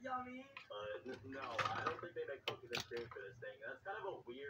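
A person's voice, vocalizing without clear words, with two sharp clicks about half a second apart a little past the middle.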